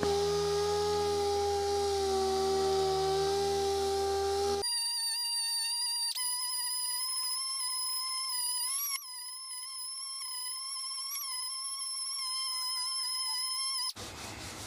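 Pneumatic dual-action sander with 80-grit paper running on body filler, a steady whine. About four and a half seconds in, the sound changes abruptly to a thinner, higher whine that wavers slightly as the sander is worked over the panel.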